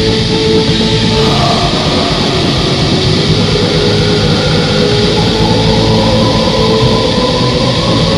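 Black metal recording: a dense, loud, unbroken wall of distorted guitars and drums, with a melody line of held notes that moves to new pitches about a second in and again later.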